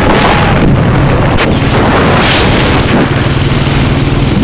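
Royal Enfield single-cylinder motorcycle on the move: loud wind buffeting on the microphone over the engine's low, steady throb.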